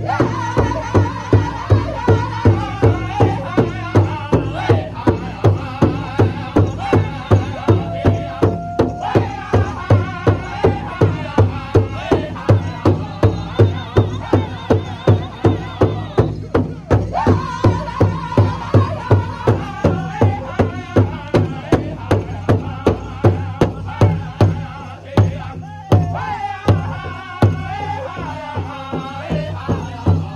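Powwow drum group: several men striking one large powwow drum together with padded drumsticks in a steady, even beat, under high-pitched male voices singing falling phrases, with short breaks in the singing between phrases.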